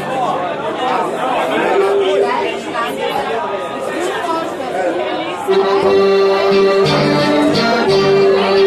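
Crowd chatter in a hall with a few held instrument notes, then about five and a half seconds in the band starts a tune: button accordion chords with tuba and guitars, louder than the talk.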